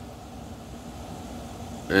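Steady low rumble of outdoor background noise with no distinct event, like the hum of distant traffic. A man's voice starts right at the end.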